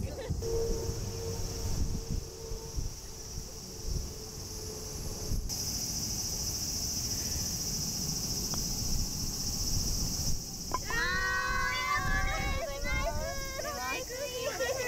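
Steady, high-pitched buzzing of summer insects with low wind rumble on the microphone. Near the end, voices cry out.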